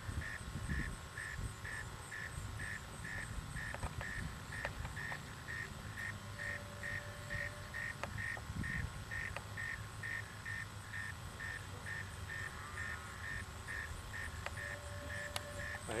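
Electronic sonic alarm aboard a descending high-power rocket beeping steadily, with short high beeps at about two a second.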